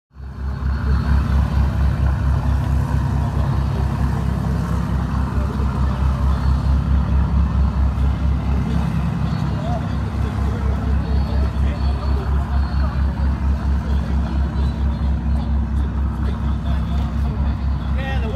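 A motor engine idling with an even, steady low throb, about four beats a second.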